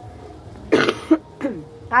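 A woman coughing: one harsh cough about two-thirds of a second in, with a second short cough right after it. It is a lingering cough from an illness she is still recovering from.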